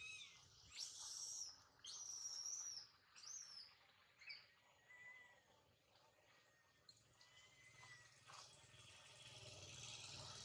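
Faint, high-pitched animal calls: a handful of short calls that rise and fall in pitch during the first half, then only faint background.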